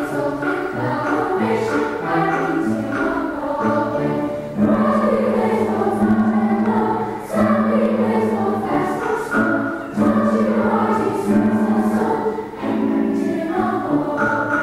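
Children's choir singing a lively song, with a strong repeated low held note under the voices from about four and a half seconds in.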